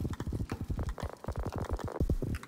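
Lo-fi foley rhythm sample playing: quick, irregular clicks and knocks, several a second, with a short pitched tone about a second in.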